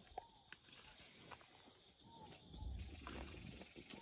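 Near silence: quiet outdoor ambience with a few faint short chirps and soft clicks, and a faint low rumble about two and a half seconds in.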